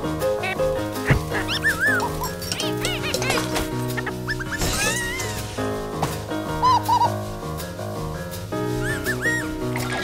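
Instrumental background music with a cartoon bird character chirping over it in several quick runs of short, high, rising-and-falling chirps.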